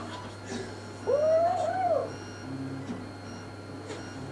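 A single drawn-out call about a second long, rising then falling in pitch, over a faint steady hum.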